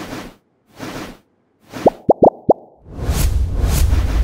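Animated-transition sound effects: two short hissy swishes, then four quick rising blips about two seconds in, followed near the end by a swelling whoosh with a deep bass boom.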